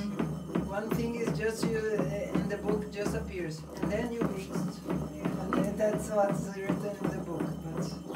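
Background music with a voice, over irregular knocking and scraping of a wooden pestle in a white stone mortar as a liquid mixture is stirred and pounded.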